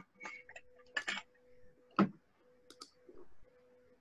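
A handful of irregular clicks and light knocks at a computer desk, the loudest about two seconds in, over a faint steady electrical hum.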